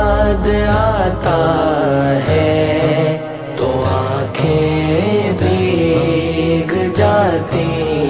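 Interlude of a naat: a layered vocal chorus hums a slow, wordless melody with gliding notes, over a deep low swell that fades about a second in.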